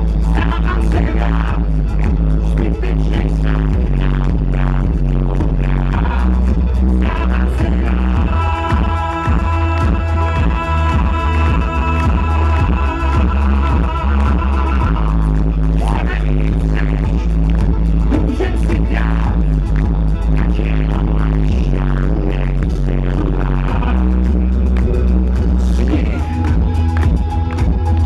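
Live pop band music through a PA: a heavy bass line and drums under keyboards, with a long held chord from about eight to fifteen seconds in, an instrumental passage of the song.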